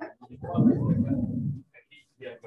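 A loud, low-pitched vocal sound, held for over a second and then cut off.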